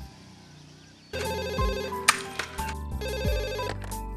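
Mobile phone ringtone: an electronic ring pattern of rapidly pulsing tones that starts about a second in and sounds in two bursts, over background music.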